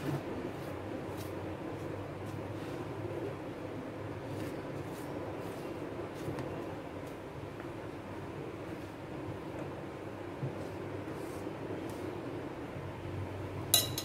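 A spatula stirring thick brownie batter in a plastic bowl: soft scraping with faint scattered clicks over a steady background noise, and a sharper clink against the bowl near the end.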